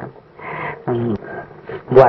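A man's voice speaking softly in short, broken phrases, quieter than the steady talk around it.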